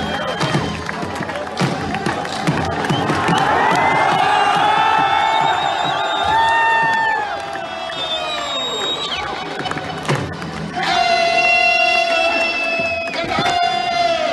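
A packed crowd cheering while border guards hold long drawn-out shouted parade commands. One shout runs for about five seconds from a few seconds in and falls away at its end. A second, steadier held shout comes near the end and drops in pitch as it breaks off.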